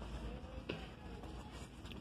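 Faint Christmas music from the store's speakers over a steady low room hum, with one light click just under a second in.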